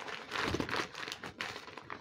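Brown paper wrapping being crumpled and pulled away from a rolled poster: a dense crackling rustle, loudest in the first second and thinning out near the end.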